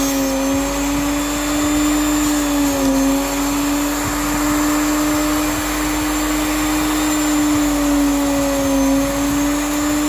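Brushed sewing machine motor running steadily with a whine, dipping slightly in pitch twice. A file is held against its spinning commutator.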